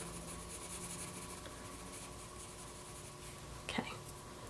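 Faint scratching of a hard H graphite pencil stroking lightly on drawing paper, in short repeated strokes that die away after the first couple of seconds.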